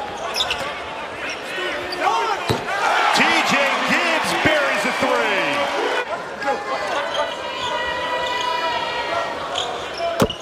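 Basketball game court sound: a ball bouncing and sneakers squeaking on the hardwood floor, with short squeals thickest in the middle, over arena crowd noise.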